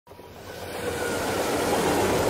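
A noisy, rumbling swell fading in from silence and growing steadily louder: an opening sound effect for the video's intro.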